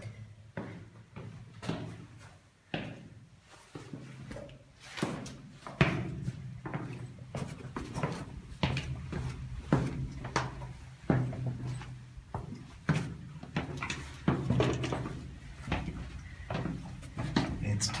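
Footsteps scuffing and knocking on stone in a narrow rock-cut tunnel: a string of irregular knocks and scuffs, with indistinct voices in the background.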